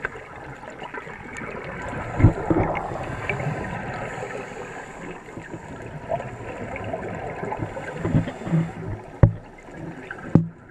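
Scuba divers' exhaled bubbles gurgling from their regulators, heard underwater through a camera housing as a muffled, continuous rush. Louder bubbling bursts come about two seconds in and again near the end, with a sharp click just before the end.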